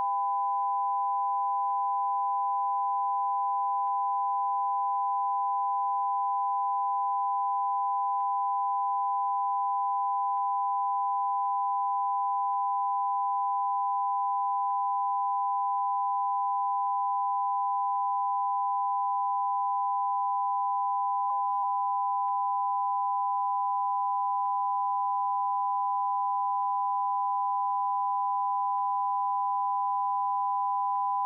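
Broadcast line-up test tone sent with colour bars: one steady, unbroken pitch that does not change.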